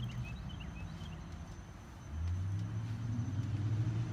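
Low engine rumble of a road vehicle in passing traffic, growing louder about two seconds in.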